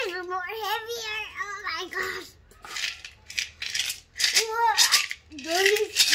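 A young girl's high-pitched wordless vocalising, with a rattle of coins shaken inside a heavy ceramic piggy bank in the middle.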